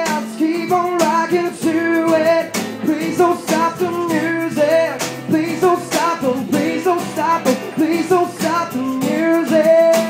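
Live acoustic pop cover: a male voice sings over strummed acoustic guitar.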